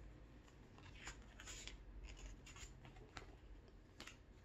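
Faint rustle and a few soft ticks of a picture book's paper page being turned by hand.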